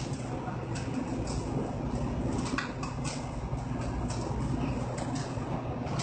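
Steady low rumble of a commercial kitchen's extractor hood running, with a few light clicks and clinks of utensils at the counter.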